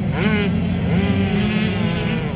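Dirt bike engine idling steadily, with a brief voice about a quarter-second in.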